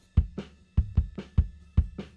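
Multitrack drum-kit recording playing back, with sharp hits and deep kick thumps in a steady beat. The kick channel runs through a graphic EQ.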